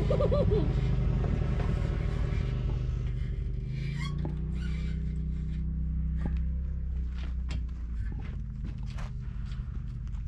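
Dirt bike engine idling steadily, with a few light clicks and knocks in the second half.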